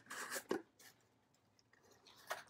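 Cardboard mystery box being opened by hand: a short scrape and rustle of the lid flap, ending in a light knock about half a second in, then a few faint ticks.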